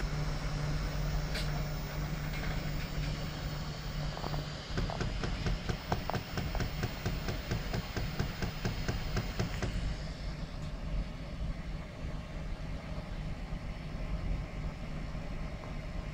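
3D printer running: a steady low hum of its motors and fans, with a stretch of rapid, even ticking from about five to ten seconds in.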